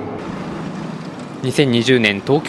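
Steady road traffic noise, then a voice starting about one and a half seconds in.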